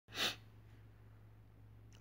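A single short, breathy burst from a person about a quarter second in, like a quick sniff or breath close to the phone's microphone, followed by a faint steady low hum.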